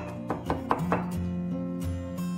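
Chinese cleaver mincing garlic on a wooden cutting board: several quick, sharp knocks of the blade on the board in the first second, over background music.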